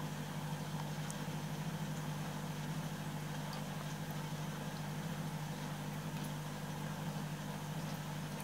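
Steady low mechanical hum with an even hiss above it, unchanging throughout.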